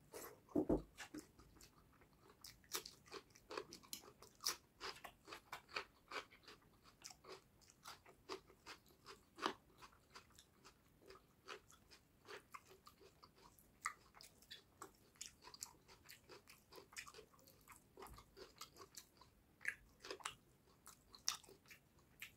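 Close-miked chewing and mouth sounds of a man eating fish curry and rice by hand: a steady run of small clicks and smacks, with a louder thump about a second in.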